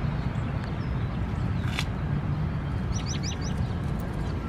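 Outdoor park ambience: a steady low rumble, with a small bird giving four quick, high, rising chirps about three seconds in. A single sharp click comes a little before the two-second mark.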